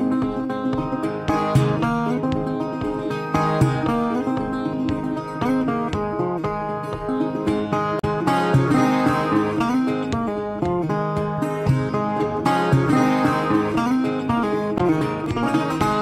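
Fingerpicked steel-bodied resonator guitar playing an instrumental blues-ragtime tune: a steady run of bright, twangy plucked notes over a picked bass line.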